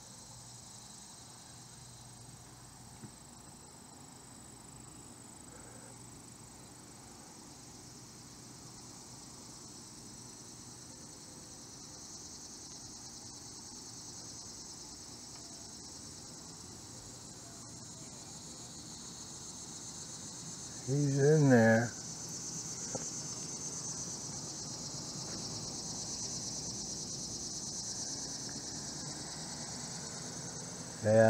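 Steady high-pitched insect chorus that grows louder through the second half. About two-thirds of the way in comes a brief, close murmur of a man's voice.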